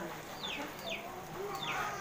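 A bird giving a few short, high chirps that fall in pitch, about one every half second.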